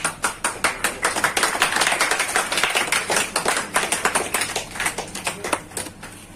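Small audience clapping in a hall: scattered claps at first, building to steady applause through the middle and thinning out near the end.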